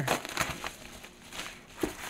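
A large paper mailer envelope being handled and opened, crinkling and rustling in irregular bursts, with a short louder sound near the end.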